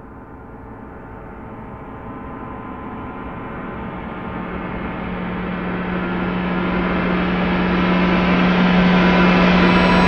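A gong-like swell rising steadily in loudness and brightness throughout, a dense shimmering wash over a steady low hum. It is an edited riser sound effect building to a peak.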